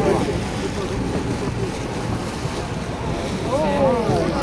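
Steady wind rushing over the microphone with a low, even rumble, while voices chatter briefly at the start and again near the end.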